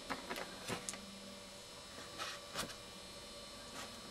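Faint steady electrical hum from bench electronics, with a few soft clicks and taps as the gear is handled.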